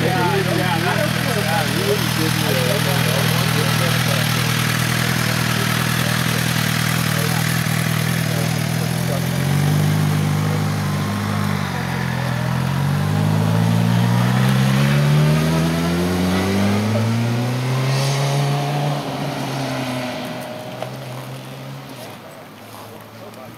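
Sport motorcycle engines idling steadily at close range. From about nine seconds in the engine pitch climbs in several sweeps as a bike accelerates away, and the sound fades near the end.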